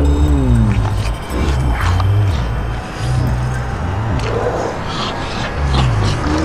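Music with low, held bass notes and pitched moaning glides that bend up and down over them.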